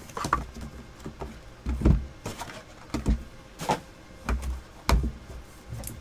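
Cardboard trading-card packs and their box being handled on a desk as the box is opened: a string of light knocks and taps with some rustling, the loudest knocks about two and five seconds in.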